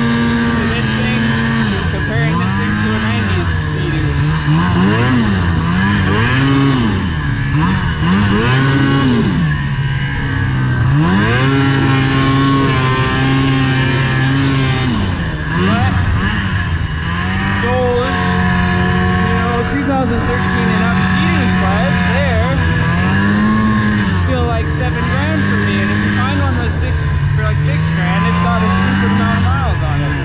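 2005 Ski-Doo MXZ snowmobile engine running under way, its pitch rising and falling again and again as the throttle is opened and eased, with a steady rush of wind and track noise beneath it.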